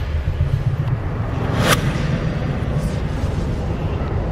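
A low, steady rumbling drone with a single sharp swish about a second and a half in.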